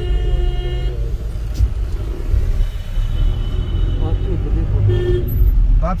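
Car engine and road noise heard from inside the cabin while driving, with a vehicle horn sounding for about a second at the start and shorter, fainter horn-like tones later.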